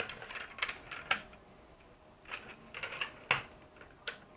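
Tripod legs being collapsed: the buckle-style leg locks clicking open and the telescoping leg sections sliding down. The sound comes in two bursts of clicks and rattles, about a second each, the second starting a little after two seconds in, each ending in a sharper knock.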